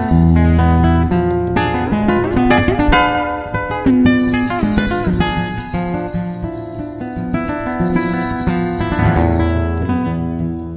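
Live acoustic guitar playing a quick run of plucked notes over deep bass notes. About four seconds in, a high hissing percussion sound joins and runs until just before the end.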